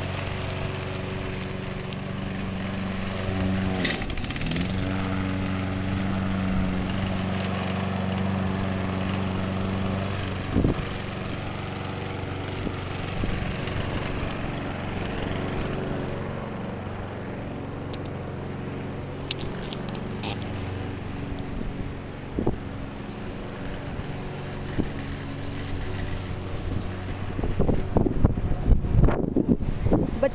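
STIGA walk-behind lawn mower running steadily while cutting grass, dipping briefly in pitch about four seconds in and growing fainter in the second half. There is a single sharp knock about ten seconds in.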